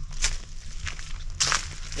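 Footsteps on a dry, leaf-strewn forest trail: a few separate steps about half a second apart, the loudest near the end.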